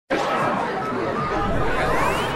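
Show-intro sound collage: a dense babble of many overlapping voices. A rising sweep starts near the end.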